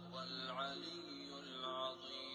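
Quran recitation: a man's voice chants in Arabic, drawing out long melodic notes that bend and waver, over a steady low hum.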